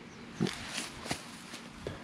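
Soft, irregular rustling and brushing of green wheat stalks and clothing as a leg is moved out through the standing crop, in a few short scrapes.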